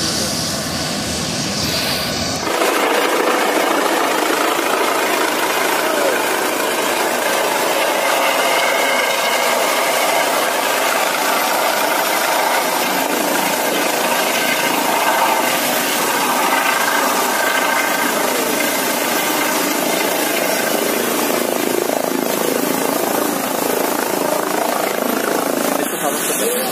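A light helicopter with a shrouded tail rotor hovering low and settling onto the pad: steady, dense turbine and rotor-wash noise with a faint whine. A couple of seconds in the sound changes abruptly and the deep low end drops away.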